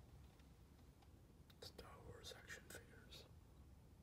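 Faint whispered speech from about a second and a half in to just past three seconds, over near silence.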